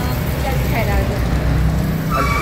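Street noise: a steady low rumble of road traffic, with faint voices talking.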